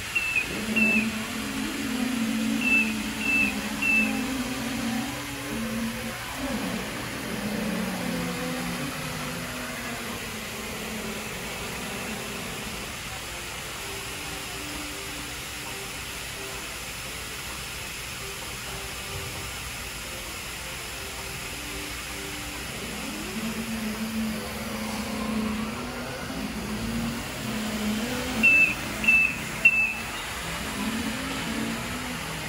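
Tennant T7AMR robotic floor scrubber running with a steady hum, giving short high beeps in quick clusters about a second apart near the start and again near the end.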